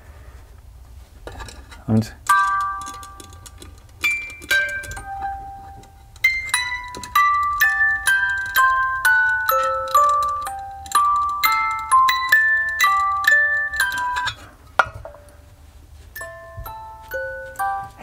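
Hand-cranked music box movement playing a tune, its pin cylinder plucking the tuned steel comb into ringing notes, with small clicks from the mechanism. It stands on an empty metal project box that acts as a sounding board and makes it much louder. The tune starts about two seconds in, pauses briefly near three-quarters of the way through, and resumes.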